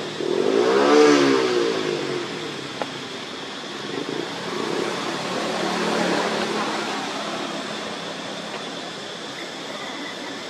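A motor vehicle passing close by, swelling to its loudest about a second in and then fading away. A second, fainter swell of vehicle noise follows around the middle, over a steady high-pitched hum.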